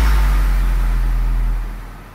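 A deep sub-bass note from an electronic dance track, held steady and then fading out near the end.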